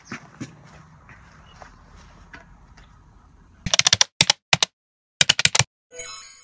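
Faint outdoor ambience, then, over the last two seconds or so, runs of sharp key clicks in quick bursts with dead silence between them: a keyboard typing sound effect.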